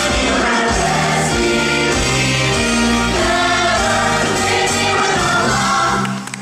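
Stage cast singing together over a live band in a musical-theatre number.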